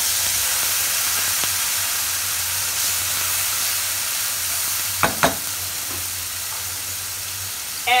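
Tomato purée sizzling and spitting in hot oil with cumin seeds and dried red chillies as a spatula stirs it round the pan. The hiss eases off gradually as the purée settles, with two short knocks about five seconds in.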